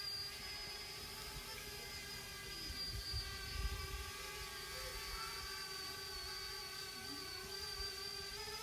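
Parrot Bebop 2 quadcopter's motors and propellers whirring steadily in flight, a faint even hum with a thin high whine. Wind rumbles on the microphone around the middle.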